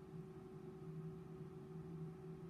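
Faint, steady hum of an Instron universal testing machine running a tensile test on an aluminium specimen. It has one constant tone and a lower hum that wavers on and off.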